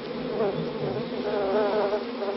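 A honeybee swarm buzzing around a disturbed hive, a dense wavering drone, with a short laugh about a second in.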